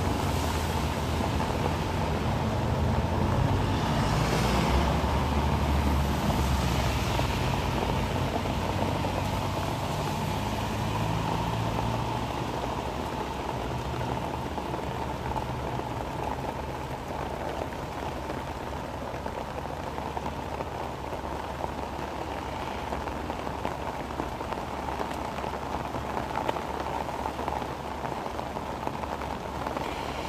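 Heavy rain falling steadily. A low engine rumble of a vehicle runs under it for the first ten seconds or so, then fades away.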